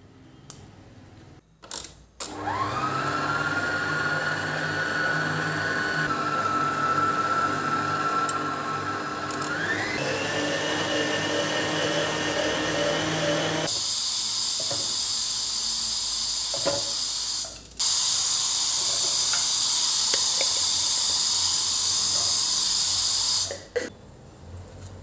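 Electric stand mixer's motor starting with a rising whine while the dough hook works flour and oil into dough, then stepping up in pitch twice as the speed is turned up. In the last ten seconds the whine gives way to a steady hiss, broken once briefly.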